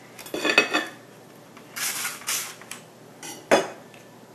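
Metal knife and fork clinking and scraping against a plate while cutting cooked meat, in a few short spells, with a sharp clink about three and a half seconds in.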